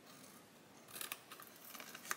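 Small scissors snipping through cardstock: a run of faint, short snips starting about a second in.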